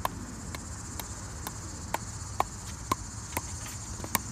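A plastic pickleball bouncing again and again on the edge of a pickleball paddle: a sharp tick about twice a second at an even pace. A steady high insect chorus of crickets or similar runs underneath.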